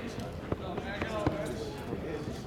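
Faint voices at a ballfield, with three sharp knocks in the middle.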